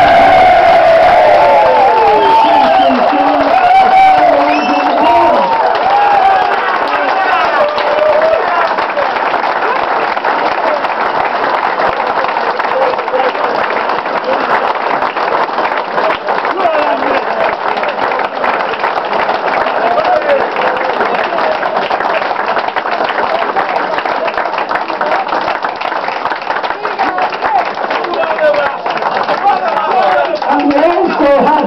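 A roomful of people cheering and shouting, giving way after several seconds to sustained applause, many hands clapping with voices mixed in.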